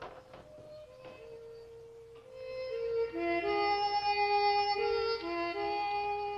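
Harmonica playing a slow tune: soft held single notes at first, then louder full chords from about two seconds in.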